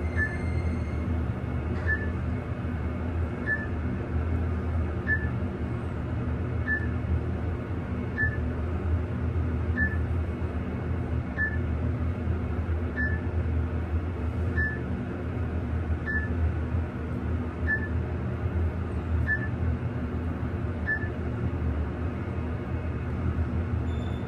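Mitsubishi traction elevator car descending, with a steady low hum of the running car and a short high beep each time a floor is passed, about every second and a half. The beeps stop a few seconds before the end as the car slows for the lobby.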